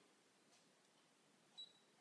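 Near silence, with one short faint high beep about one and a half seconds in: the Brother ScanNCut's touchscreen key-press tone as the stylus taps a button.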